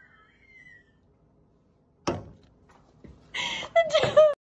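High-pitched vocal whining from a prank reaction, trailing off within the first second, then a sudden loud burst about two seconds in and loud high shrieks near the end.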